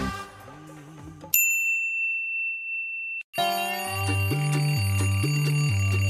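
Background music fades, then a single steady, high electronic beep about two seconds long: an alarm clock sound effect. A moment later, background music with a repeating bass beat starts.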